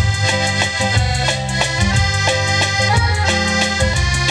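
Piano accordion playing a melody over a rhythmic backing with a steady beat.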